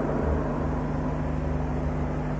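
Steady low electrical hum with background hiss from the hall's microphone and amplification chain, heard in a pause between spoken phrases.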